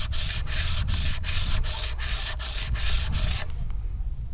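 Small piece of argillite ground back and forth on a wet sandstone slab, rounding its edge: a quick run of rasping strokes, about three or four a second, that stops about three and a half seconds in.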